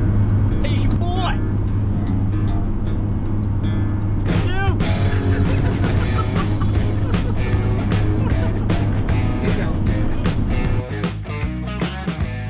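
Steady low drone of a van's engine and tyres heard from inside the cab at dual-carriageway speed, with voices briefly at the start. Music with a steady beat comes in about four seconds in; near the end the road drone drops away and the music carries on alone.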